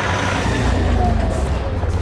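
Land Rover 4x4 driving past a camera at road level: steady engine rumble and tyre noise, its pitch dropping slightly as it pulls away.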